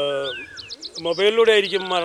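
Small birds chirping: a quick run of high, short chirps and a brief falling whistle about half a second in, between a man's held voice and his resumed speech.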